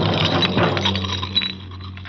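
Glass clinking and breaking, a clatter of many small sharp clicks that fades away about a second and a half in, over a low steady hum.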